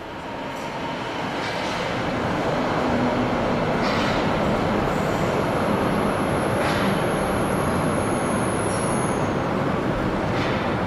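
A DUEWAG U2-type light-rail train pulling into an underground station. Its rumble grows louder over the first few seconds and then holds steady, with a thin high wheel squeal through the second half and a few faint clacks.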